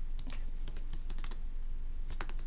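Typing on a computer keyboard: a run of irregular key clicks, most closely bunched around the middle.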